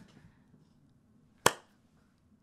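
A single sharp click about one and a half seconds in, against near silence.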